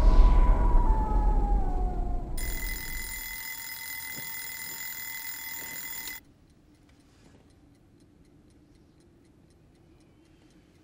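A loud whooshing sound effect with a falling tone fades out over the first two seconds. Then an alarm clock sounds a steady high tone for about four seconds and cuts off suddenly, leaving a clock's faint, rapid ticking.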